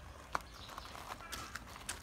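A pause between spoken phrases: faint low background noise with one short click about a third of a second in.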